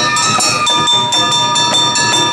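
Awa Odori festival music: a fast, even clanging beat of small hand gongs (kane) with a high flute (shinobue) note held from about a third of the way in.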